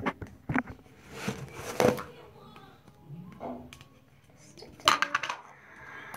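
Plastic tub with a snap-on lid being handled and pried open: a run of sharp plastic clicks and short scrapes, the loudest about two seconds in and again near five seconds.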